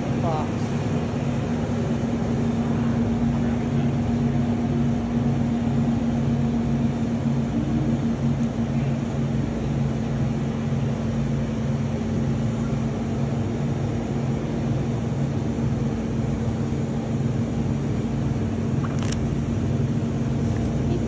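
Steady low electrical hum of refrigerated meat display cases and store ventilation, unchanging throughout.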